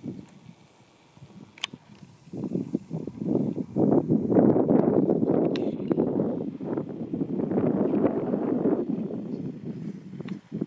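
Wind buffeting the camera microphone: a rough, fluctuating rumble that comes up about two seconds in and keeps going, after a quieter start.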